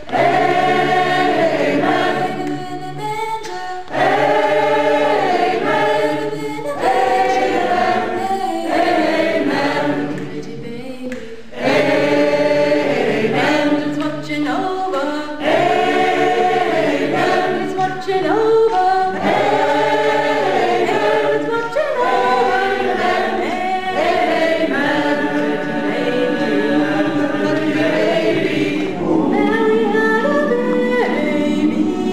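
A choir singing in long phrases, with short breaths or pauses between phrases about four and eleven seconds in.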